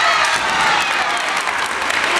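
Spectators clapping in a gymnasium, steady applause through the whole stretch. Under it, a kendo player's drawn-out shout (kiai) trails off in the first half second.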